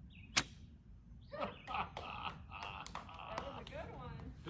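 Black Cat "Airport" novelty firework finishing its show: a single sharp pop about half a second in. From about a second and a half on comes a wavering tone with scattered crackles.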